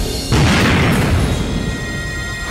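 A dramatised explosion sound effect, standing for a gas cylinder blast: a sudden boom about a third of a second in that dies away over a second or so, over the background score.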